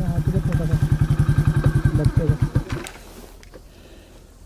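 Motorcycle engine idling with an even, rapid beat of firing pulses that stops about three seconds in.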